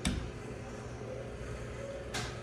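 Overhead garage door opener starting with a sharp click, then its motor running with a steady hum as it begins raising the door.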